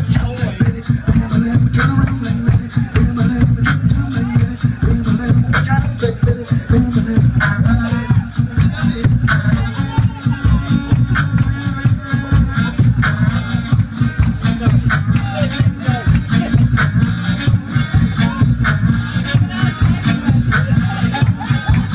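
Live one-man-band blues: a fast, driving beatboxed rhythm with a heavy low pulse, under bursts of blues harmonica chords.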